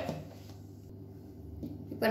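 Quiet room tone with a steady low hum, and a faint tap near the end as the plastic lid of a mixer-grinder jar is handled.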